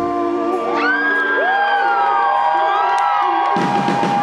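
Live rock band in a breakdown: the bass and drums drop out, leaving held notes that slide up and down in pitch, then the full band with drums comes back in near the end.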